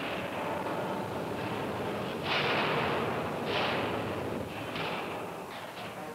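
Steel blooming mill at work as a hot ingot is driven through its rolls: a dense, noisy rumble with several sudden loud surges, the strongest about two and a quarter seconds in, then near three and a half and five seconds, and two short ones near the end.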